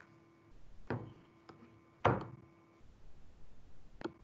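A few dull knocks: one about a second in, a faint tap after it, a louder one about two seconds in, and another at the very end, with a faint steady hum under the first two.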